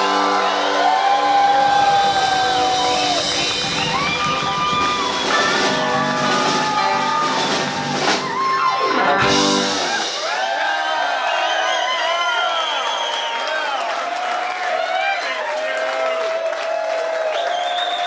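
Live rock band with electric guitars, bass and drums playing out the final bars of a song, with long held guitar notes, ending on a last loud chord about nine seconds in. The crowd then cheers and whoops over the ringing guitars.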